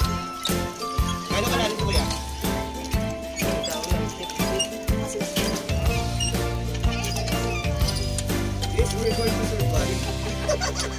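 Background music: a melody of held notes over a steady beat, with a fuller sustained bass coming in about six seconds in.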